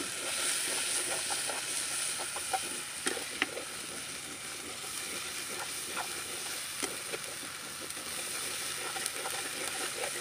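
Onion, ginger-garlic and turmeric masala frying in oil in a kadhai, a steady sizzle, with a metal ladle scraping and clicking against the pan now and then as it is stirred. The masala is being bhuna, fried down until the spices cook through.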